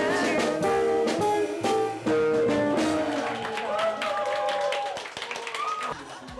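A woman singing a jazz ballad with an archtop jazz guitar strumming chords behind her; the last sung note is held and ends about five seconds in, and clapping starts near the end.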